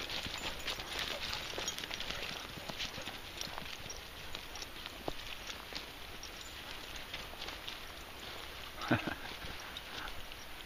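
Dry fallen leaves and dead bracken rustling and crunching underfoot as dogs' paws and a walker's footsteps move through woodland litter, a steady stream of small irregular crackles. A short voice-like sound near the end is the loudest moment.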